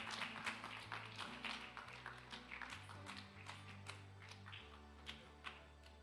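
Scattered hand clapping thinning out and fading, over soft live church music of low held keyboard chords and acoustic guitar.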